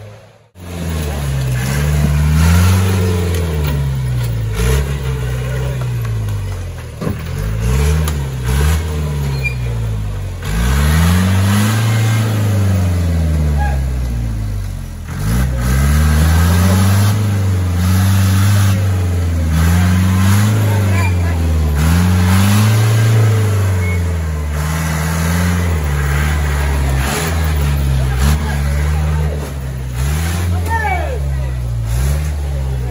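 A Willys-style 4x4 jeep's engine revving up and down over and over as it works through deep mud on an off-road course, the pitch rising and falling every second or two. Spectators' voices run underneath.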